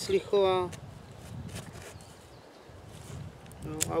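The small saw blade of a Mikov Fixir folding knife sawing through a thin stick in faint, short rasping strokes, the cut all but through by the end.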